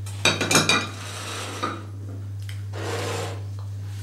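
Ceramic plates and cutlery clinking as they are handled at a table: a quick run of sharp clinks in the first second, one more a little later, then softer rustling. A steady low electrical hum lies underneath.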